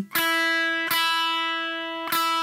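Electric guitar's two thinnest strings strummed together twice, about three-quarters of a second apart, the notes ringing on and slowly fading between strokes.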